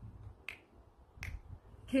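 Finger snaps keeping time, two sharp snaps about three-quarters of a second apart, as a woman's unaccompanied singing comes in at the very end.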